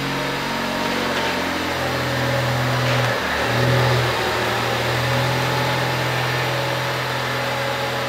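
Ford Focus ST's turbocharged four-cylinder engine running at low revs as the car creeps forward. It is a steady low drone that dips briefly and then rises a little about three seconds in.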